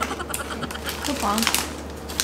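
Light crackles and clicks of snack-eating: a plastic bag of red-coated peanuts being handled and peanuts being chewed. Two brief murmurs of voice come through.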